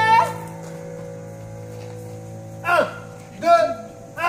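A woman's long held sung note ends with a short upward flick, and a keyboard chord rings on quietly after it. Near the end a voice sounds a few short syllables that swoop up and down in pitch.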